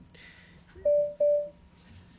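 Two short electronic beeps of the same mid pitch, a quarter second apart, about a second in, from a video-conference call connecting.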